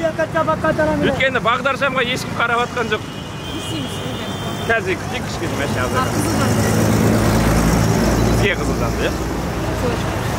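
City road traffic: a vehicle engine's low rumble grows louder from about six seconds in, as a vehicle passes close, over a steady traffic hum.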